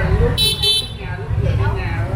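A motorbike horn beeps twice in quick succession about half a second in, over the steady low rumble of street traffic.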